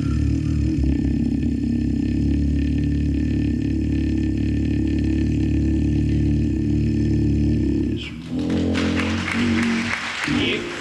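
A gospel bass singer holds one very low, steady note into a microphone for about eight seconds, ending a quartet song. The note stops near the end, and applause and voices follow.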